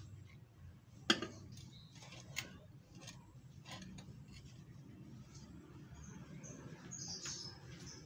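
Quiet background with a faint low hum, a sharp click about a second in, a few softer clicks, and short high chirps near the end.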